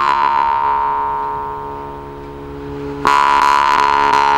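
Volgutov "Vedun" temir-khomus, a Yakut steel jaw harp, ringing with a sustained drone after a pluck, its bright overtone sliding down a little and the sound slowly fading. A second strong pluck about three seconds in brings it back to full strength.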